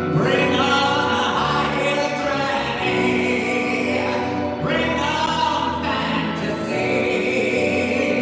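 A live song: a singer with keyboard and violin accompaniment, held notes under sung phrases that come in near the start and again about halfway through.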